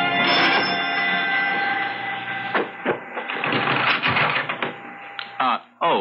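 Organ music bridge from a radio drama: a held chord that thins out over the first few seconds, with one note lingering until about five seconds in. A couple of sharp knocks come about two and a half seconds in, and a voice starts just before the end.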